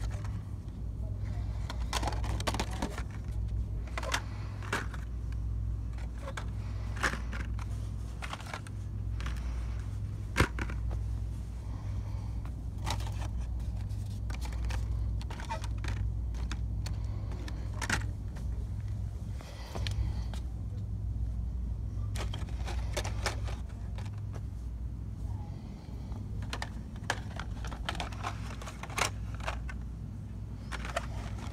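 Plastic blister-card toy packages clicking and rattling as they are flipped through on metal pegboard hooks, in irregular handling clicks over a steady low rumble.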